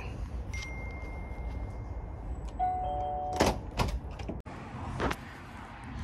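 A brief electronic chime near the middle, then a few sharp clicks and knocks at a uPVC front door as it is answered and opened.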